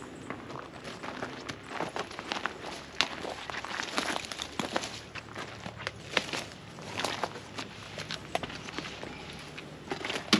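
Footsteps on a dry, stony dirt trail: an uneven run of scuffing steps climbing a slope.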